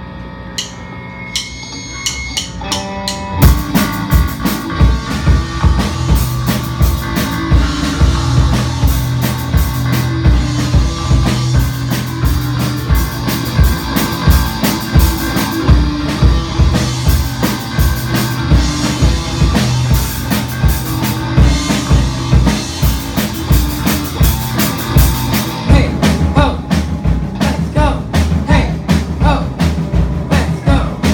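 A live rock band playing: a few quieter guitar notes open, then the drum kit and electric guitar come in together about three and a half seconds in with a steady, loud rock beat. A voice starts singing near the end.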